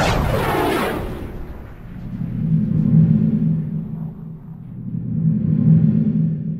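Logo sting sound design: a bright whoosh with falling sweeps that dies away within the first second, then a low humming drone that swells and fades twice, about three seconds apart.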